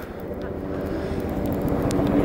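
Koenigsegg Agera RS's twin-turbo V8 idling with a steady low note that grows steadily louder.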